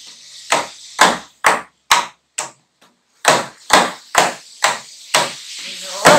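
Hand drum with a skin head struck by hand in a steady beat, about two strokes a second, each stroke sharp with a short ring, with a brief pause in the middle.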